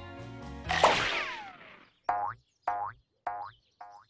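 Cartoon score music with a loud accent and a descending slide about a second in, then fading out. It is followed by four short, evenly spaced pitched notes that grow quieter, a comic sound-effect cue.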